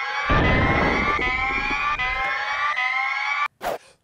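Off-screen dynamite explosion sound effect: a low rumbling boom for about two seconds under a rising, siren-like tone that repeats about four times and cuts off suddenly, followed by a short burst near the end.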